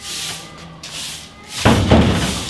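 Short straw hand broom sweeping paving stones, a brushy swish roughly every second. Near the end comes a much louder scraping swish with a low thump that fades out slowly.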